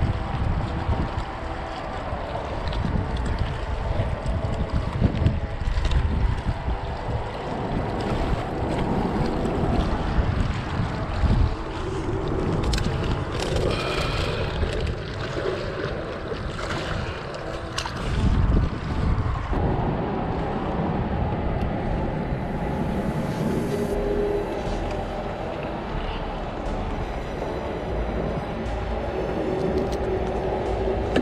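Wind buffeting the microphone in uneven gusts, over small waves lapping against a rocky shore.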